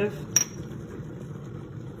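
A single light clink with a brief ringing tone, about a third of a second in, as the tea mug's lid is set down on the counter.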